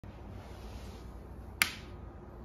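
A single sharp snap about one and a half seconds in, over low steady room noise.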